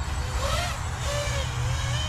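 Five-inch FPV quadcopter (Diatone Roma F5 V2) on take-off, its motors and propellers whining in several high tones whose pitch rises and falls with the throttle, over a steady low rumble.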